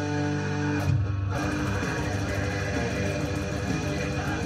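Distorted electric guitar, a Schecter Damien Elite tuned to D standard, playing a heavy metal riff: held chords ring for about a second, break off briefly, then give way to fast picking.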